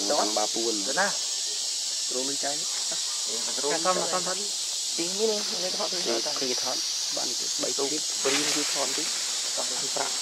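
A steady, high-pitched insect drone, with a person talking off and on over it.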